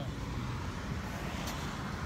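Steady street background noise with a low traffic hum, and a faint tick about one and a half seconds in.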